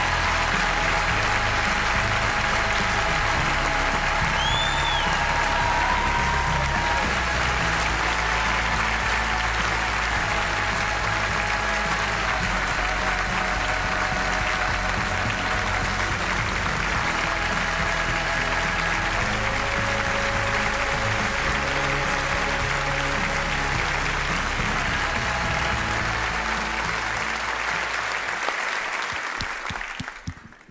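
A large theatre audience applauding steadily over playing music with held notes and a moving bass line, with a brief high whistle about four seconds in. Applause and music fade out together near the end.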